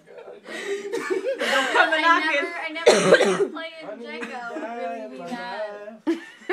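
People laughing hard, with coughing breaking into the laughter.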